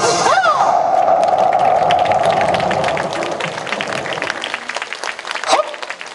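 The yosakoi dance music stops right at the start, followed by a short burst of shouting and cheering, then audience clapping that thins out over the following seconds.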